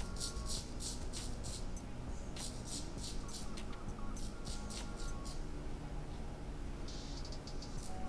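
Straight razor scraping stubble off a lathered scalp in short, quick strokes, several a second, in runs with brief pauses between them.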